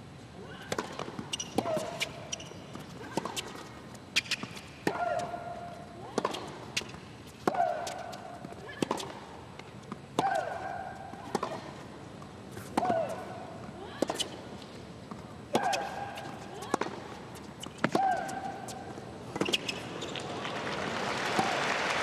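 Tennis rally: racket-on-ball strikes about every 1.3 s, with a loud, falling shriek-like grunt from one player on every other stroke and shorter grunts on some of the other shots. Near the end the rally stops and crowd applause swells.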